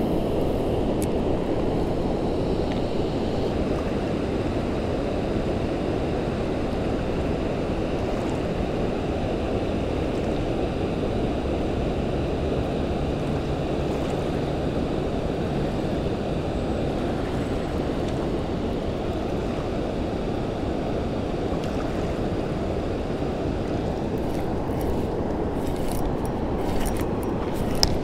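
Steady low rushing of wind and river water, with a few faint clicks near the end.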